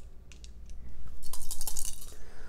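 Plastic game dice clicking together in a hand as they are gathered and shaken before a roll: a quiet start, then a quick run of small sharp clicks in the second half.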